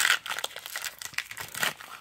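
A baseball card pack's wrapper being torn open and crinkled by hand: a sharp rip right at the start, then scattered crackles of the wrapper.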